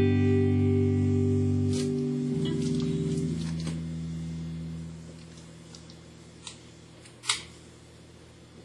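Epiphone Special electric guitar chord ringing out and fading away over about five seconds, with the pitch of one note shifting about two seconds in. Near the end come a couple of clicks, the second one sharper.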